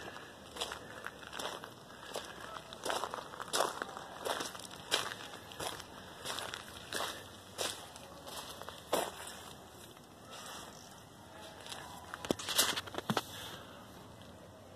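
Footsteps of a person walking at a steady pace, about three steps every two seconds, stopping about nine seconds in, with a few more scuffing steps near the end.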